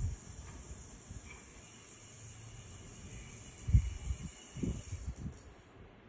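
Muffled low rubbing and bumping from a hand massaging a cat's head and chin close to the microphone, the loudest bump about four seconds in. A steady high hiss runs under it and stops near the end.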